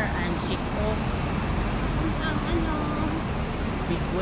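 Steady low rumble of road traffic and a double-decker bus's diesel engine at a bus terminus, with faint voices in the background.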